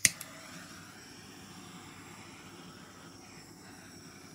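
Handheld gas torch clicking once as it is lit, then hissing steadily as the flame is passed over wet acrylic pour paint to bring up cells.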